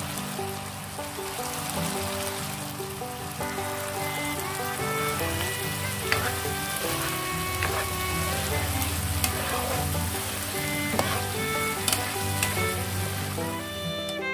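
Chicken pieces sizzling as they cook in coconut-milk sauce in a pan, a steady hiss with a few sharp clicks, while background music plays over it.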